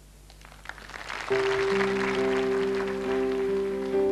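Scattered audience clapping, then about a second in the song's instrumental introduction begins: a keyboard sustaining steady chords as the clapping fades.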